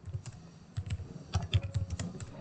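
Typing on a computer keyboard: a run of key clicks, about five a second.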